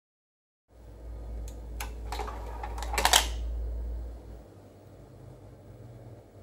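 Philips CD 303 CD player's motorized disc drawer sliding open: a low motor hum that runs from about a second in until about four and a half seconds, with a few mechanism clicks along the way and a louder cluster of clicks at about three seconds.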